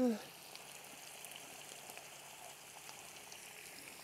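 Faint, steady sizzling of risotto rice cooking in a hot sauté pan as more chicken broth is poured in from a copper saucepan.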